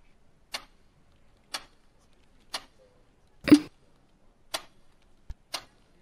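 A clock ticking about once a second, with one tick near the middle louder than the rest.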